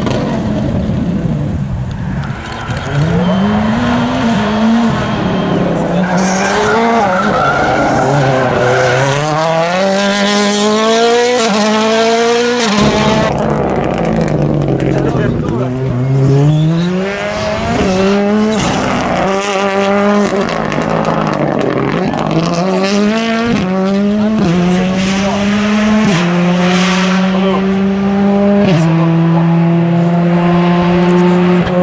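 Turbocharged four-cylinder rally car engines run hard on a tarmac stage, passing one after another. The engine pitch climbs again and again as the cars accelerate, then drops away under braking and gear changes.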